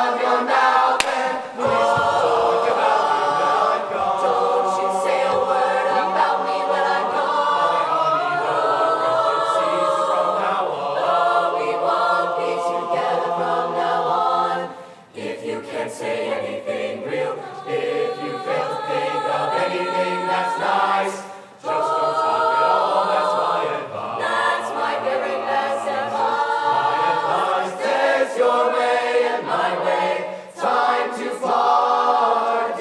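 Mixed-voice chorus singing a cappella in barbershop style, in full close-harmony chords. The singing breaks off briefly about halfway through and again about two-thirds of the way in.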